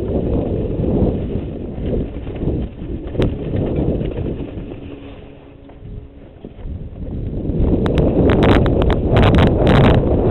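Mountain bike riding down a dirt trail, heard from a GoPro on the rider: wind buffeting the microphone, tyres on dirt, and rattling and knocking over bumps. It quietens for a moment about halfway through, then grows louder with a run of sharp clatters in the last couple of seconds.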